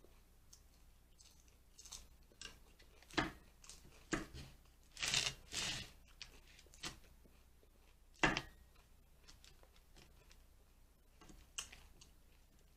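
Eating salad: a fork clicking and scraping in a plastic bowl of lettuce, with crunchy chewing. Scattered sharp clicks, a few louder crunches and scrapes in the middle, and one sharp knock about two-thirds of the way through.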